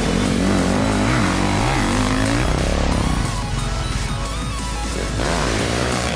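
Enduro motorcycle engine revving up and down over background music; the revving eases off about halfway through and picks up again near the end.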